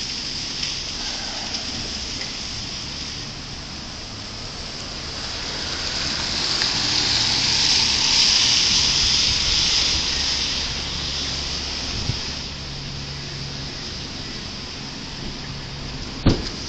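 Traffic hiss from car tyres on a wet road, with a low hum of passing traffic beneath. The hiss swells to its loudest about eight seconds in, as an SUV drives close by, then eases off.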